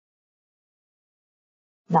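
Complete silence, a pause in the voice-over, with the narrator's voice starting again right at the end.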